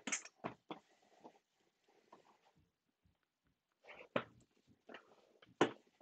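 Cardboard hobby boxes being handled and set down while a marker writes on them: a scattering of light knocks and scuffs, loudest right at the start and again about four and five and a half seconds in.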